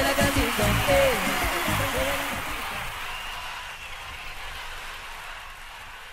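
Live tropical cumbia band music fading out at the end of a song. The beat and melody die away after about two and a half seconds, and what is left fades down steadily.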